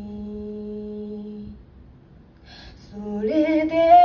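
Mixed-voice a cappella group singing live with no instruments: a held low chord stops about one and a half seconds in, there is a brief pause with a short hiss, and then the voices come back in near the end, building into a fuller chord.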